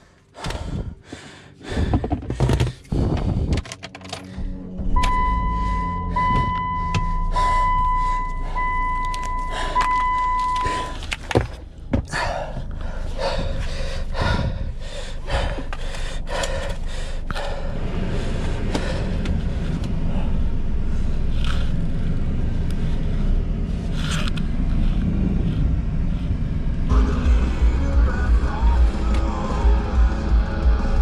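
Car door and seat thunks as someone climbs into a Chrysler PT Cruiser, then the car's electronic warning chime beeping repeatedly for about six seconds. Background music follows, with a steady beat coming in near the end.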